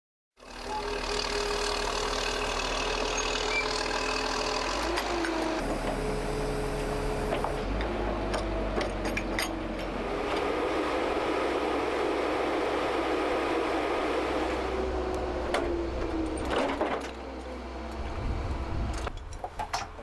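Tracked carrier's engine and hydraulics running steadily, the pitch dipping and rising a few times as the machine works. A few sharp knocks near the end.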